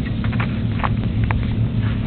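A baby sucking on a bottle's nipple: soft clicks about twice a second, over a steady low hum.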